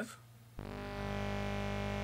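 A single steady synthesizer note from a VCV Rack software patch (VCO-1 oscillator through a VCF filter), rich in overtones, starting about half a second in and holding at one pitch. It is played to show the filter's drive setting.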